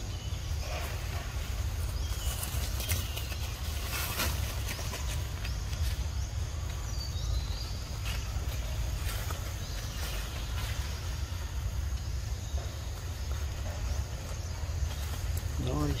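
Steady low rumble with scattered rustles and cracks of leaves and twigs as macaques clamber through undergrowth, and a few faint short chirps.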